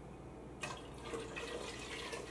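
Liquid poured into a stainless steel stockpot of pickling brine, a faint splashing that starts about half a second in.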